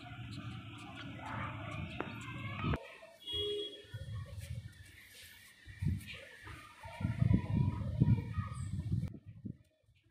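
Wind noise on the microphone in uneven gusts, strongest about seven to eight and a half seconds in.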